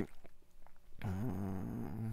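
A short pause with a few faint mouth clicks, then from about a second in a man's low, drawn-out hesitation sound, a filler 'yyy' held between phrases.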